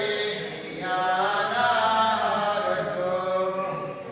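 A voice chanting a devotional hymn in long held notes that slide in pitch, with a brief break just under a second in.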